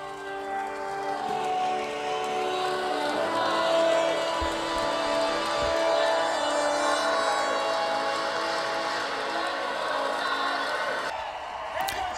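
Film soundtrack: music with long held notes over a crowd of spectators cheering and applauding.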